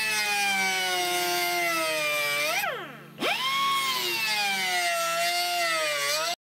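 Die grinder with a sanding drum grinding the steel of a car's chassis, running with a steady high whine. About two and a half seconds in, the pitch falls away steeply and briefly quietens, then climbs back up as the tool spins up again.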